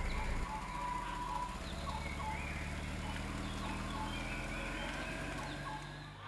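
Scattered short bird chirps and whistles over the steady low hum of a car engine idling.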